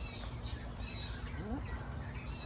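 Small birds chirping and singing, short high repeated calls, over a low steady rumble.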